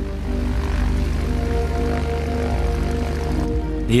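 Piston-engined propeller aircraft droning steadily as it flies past, under sustained background music.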